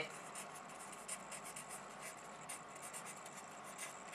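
Faint scratching of handwriting: many quick, short strokes of a writing tool on a surface while the maths working is written out.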